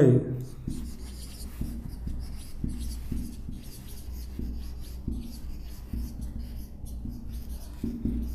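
Marker pen writing on a whiteboard: faint, irregular scratching strokes as letters are written, over a low steady hum.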